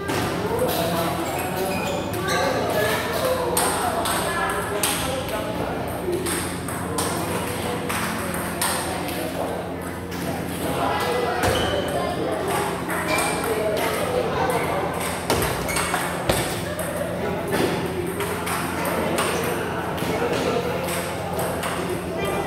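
Table tennis rally: the celluloid ball's repeated sharp clicks off the rubber paddles and the table top, at an uneven pace of a few hits a second, over background chatter.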